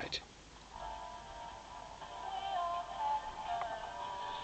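Faint, thin and tinny music with singing, the demodulated audio of an amplitude-modulated signal received by a germanium-diode crystal receiver. It fades in under a second in.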